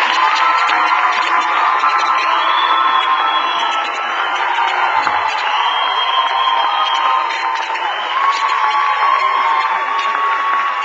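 Audience applauding and cheering, with long high-pitched whoops held over the clapping.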